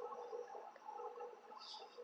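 Faint steady background hum, with no distinct sound event.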